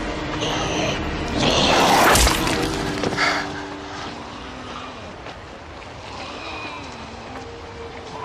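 A loud crash with a deep thud about two seconds in and a smaller hit about a second later, over sustained low tones of a film score.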